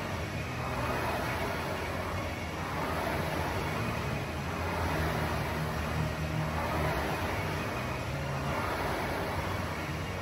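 Air rowing machine's fan flywheel whirring, swelling with each drive stroke about every two seconds.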